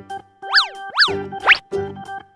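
Cartoon sound effects over light children's background music: two quick boings that sweep up and then down in pitch about half a second apart, followed by a short rising glide.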